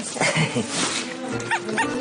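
Light background music with steady held tones, then a quick run of four short, high squeaks in the second half.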